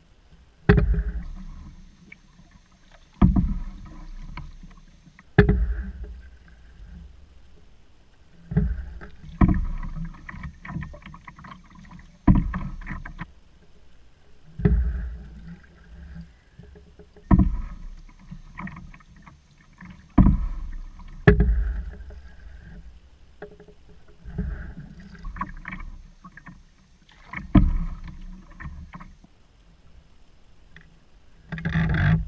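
Paddle strokes of an open canoe, one about every two to three seconds, each starting with a sharp knock and trailing off over a second or two.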